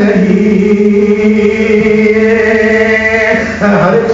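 A man chanting a line of Urdu devotional poetry (Ahl-e-Bait kalam) and holding the closing word "jee" in one long steady note for about three and a half seconds. He breaks off briefly and starts the next phrase just before the end.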